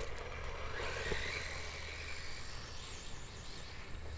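Faint, wavering electric whine of an HPI Savage XS Flux brushless RC mini monster truck's motor as it drives at a distance on a 2S LiPo.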